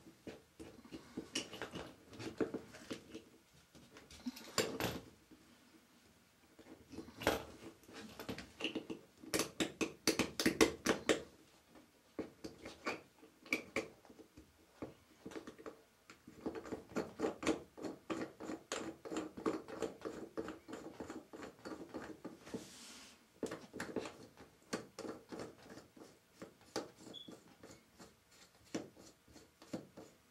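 Close handling noise from hand-fitting small plumbing parts: runs of quick small clicks and scrapes, busiest a few seconds in and again from just past the middle, with quieter gaps between.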